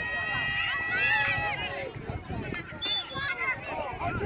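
Several distant voices shouting and calling across an outdoor soccer field, overlapping one another, with one long drawn-out call held for about the first second and a half.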